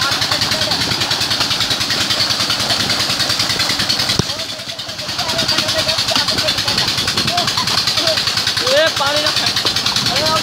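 Water gushing from a pipe into a pool and splashing as people bathe in it, over a steady engine running, with voices calling out. The rush dips briefly just past four seconds in.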